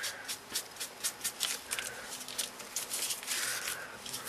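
Sponge dabbing and rubbing ink onto cardstock through a paper scallop template: a run of soft, irregular pats and rustles, several a second.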